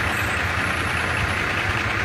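Truck engine idling steadily, a constant low rumble.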